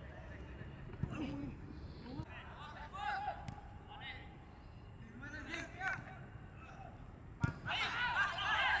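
A football being kicked on a grass pitch: a few sharp thuds, the loudest near the end, with players' shouts in between.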